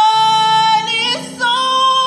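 A woman singing solo into a microphone, holding a long high note, breaking off about a second in, then holding a second, higher note, over soft sustained keyboard chords.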